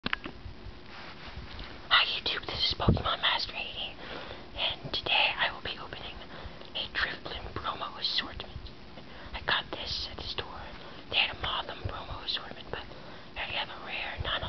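A person whispering in short, breathy bursts, with a single knock about three seconds in.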